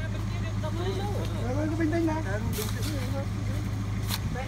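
Light truck's engine idling steadily under men's voices, with two short scrapes of a shovel in the dirt in the second half.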